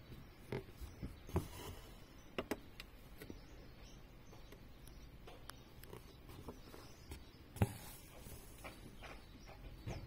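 Faint handling noises of hand embroidery: a needle pushed through taut fabric in a hoop and thread drawn through, heard as scattered soft clicks and rustles. The sharpest click comes about three-quarters of the way in.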